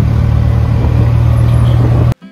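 Steady, loud rumble of an auto-rickshaw's engine and road noise, heard from inside the passenger compartment while riding.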